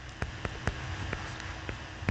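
A stylus tapping and scratching on a touchscreen while handwriting, heard as light, irregular clicks, several a second, over a faint low hum.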